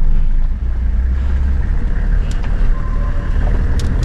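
Steady low rumble of a vehicle's engine and road noise, heard from inside the slowly moving vehicle, with two faint clicks about two and four seconds in.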